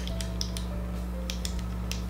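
Small plastic clicks, several in quick succession, from a concealer pen being clicked to push product up to its tip. A faint steady hum runs underneath.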